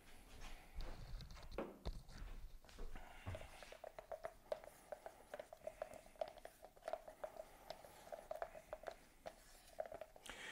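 Faint stirring: a wooden stir stick scraping and clicking against the inside of a plastic mixing cup as pigmented liquid polyurethane foam (Part B) is mixed, settling into quick rhythmic strokes from a few seconds in until near the end.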